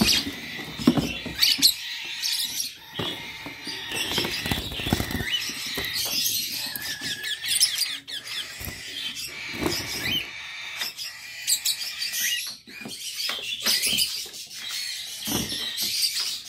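A flock of caged lovebirds and other small parrots chattering: many overlapping high-pitched squeaks and chirps, with scattered knocks and rustles.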